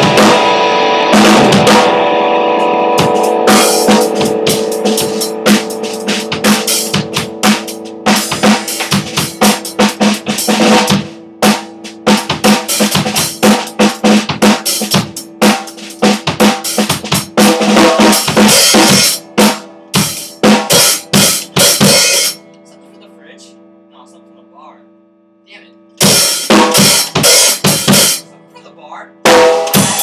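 Drum kit played loosely, with irregular snare, bass drum and cymbal hits over a steady low hum. The drumming stops for a few seconds about two-thirds of the way in, leaving only the hum, then starts again.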